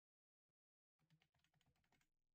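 Faint computer keyboard typing: a single click about half a second in, then a quick run of keystrokes through the second half.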